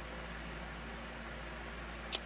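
Steady faint hiss and low hum of room tone, with no distinct sound event.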